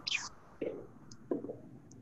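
Faint, broken-up whispered speech in a few short fragments over a quiet video-call line.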